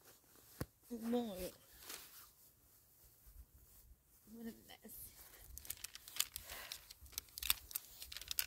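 Crinkling plastic and small clicks from fishing tackle being handled and pushed back into its container, turning into a quick run of crackles over the last three seconds, with low wind rumble on the microphone.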